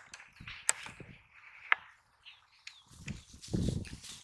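Soft thumps and a few sharp taps on dry, clumpy soil as a freshly landed fish lies on the ground and is grabbed, the heaviest thumps coming about three seconds in.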